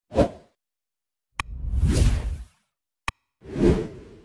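Animation sound effects: a short whoosh, then a sharp click and a longer whoosh about a second and a half in, and another click and whoosh near the end.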